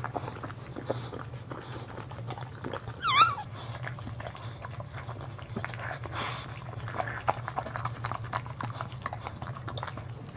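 Boxer mother licking her newborn puppy, with many small wet clicks over a steady low hum. About three seconds in, a brief, high-pitched, wavering squeal: the newborn puppy's cry.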